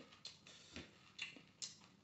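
Close-up eating sounds of a man chewing a handful of rice: a few soft, sharp, wet mouth smacks, irregular, about two a second.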